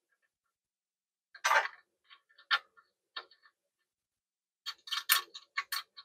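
Small metal clicks and ticks from a threaded coax cable plug being screwed onto the transmitter's antenna socket by hand. A few single clicks come first, then a quick run of clicks near the end.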